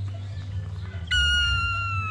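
A shrill, steady whistled note that starts suddenly about a second in and lasts about a second, falling slightly in pitch, over a low steady hum.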